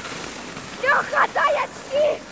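A child's high-pitched, wordless shouts, several short cries about a second in, over a steady rushing hiss from sliding down a snowy slope.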